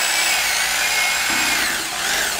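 Corded electric carving knife running with a steady whine as its reciprocating blades saw down through a submarine sandwich. The pitch dips a little partway through and comes back up.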